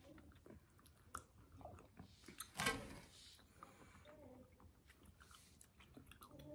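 Faint chewing and small mouth clicks from people eating soft, chewy candy sticks, with one short voice sound about two and a half seconds in.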